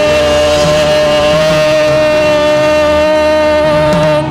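A single long note held steady at one pitch, buzzy and rich in overtones, over changing bass notes from the band; it cuts off at the very end.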